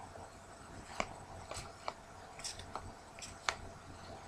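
Hockey trading cards being handled and sorted by hand: faint, with a string of light, sharp clicks and flicks as the card edges knock and slide against each other, starting about a second in.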